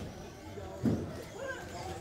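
A hall full of background voices, with electric RC race cars running on the track and a single sharp thud about a second in.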